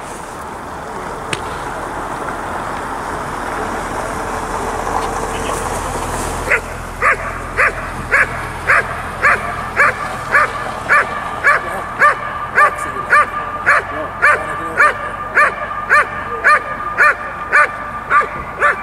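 A working dog barking in a steady rhythm, about two barks a second, starting about six seconds in, during IPO protection work. Before that there is only a steady rushing noise.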